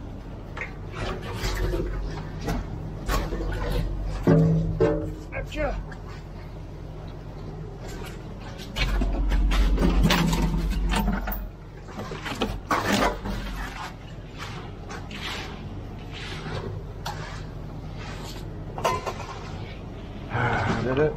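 Concrete pour from a ready-mix truck: the truck's engine rumbling low, with knocks and scrapes from the chute and wet concrete, loudest for a couple of seconds near the middle.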